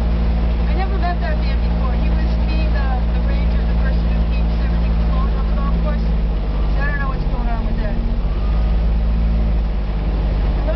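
Kubota utility vehicle's engine running steadily with a low drone while the vehicle moves. Its engine note drops a little after about seven seconds.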